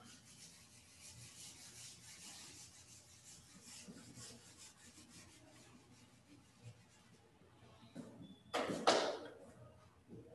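Whiteboard eraser wiping marker writing off a whiteboard in quick back-and-forth strokes, a soft scratchy rubbing that runs for about seven seconds. About nine seconds in there is one short, louder burst of noise.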